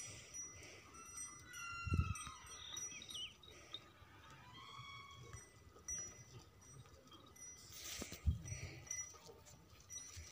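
Faint animal calls: high chirping and short rising-and-falling notes through the first half, with a dull thump about two seconds in and another near eight seconds.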